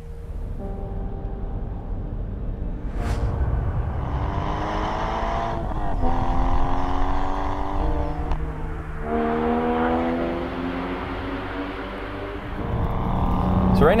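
Flat-six engine of a 2008 Porsche Cayman S with a manual gearbox, accelerating through the gears: the engine note climbs, drops at each upshift (about six and nine seconds in), and climbs again.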